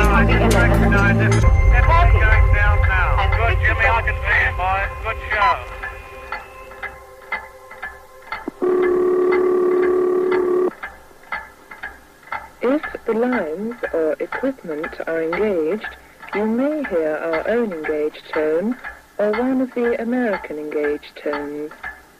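Bass-heavy music fading out, then a steady telephone signalling tone held for about two seconds, followed by a voice speaking in an old recording about telephone tones.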